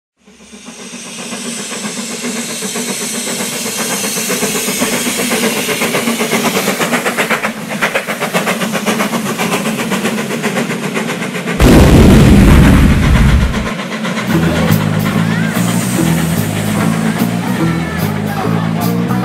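Steam locomotive sound effect: rhythmic chuffing and hiss that fades in and builds, then a sudden loud low boom about twelve seconds in. From about fourteen seconds a band's music takes over, with a stepping bass line and cymbal strokes.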